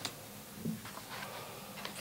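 Faint, irregular ticks and taps of a pen and paper being handled on a table, in an otherwise quiet room.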